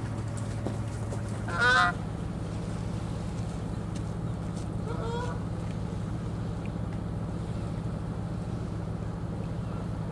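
Two honking calls from a waterbird, a loud one about one and a half seconds in and a fainter one about five seconds in, over a steady low hum.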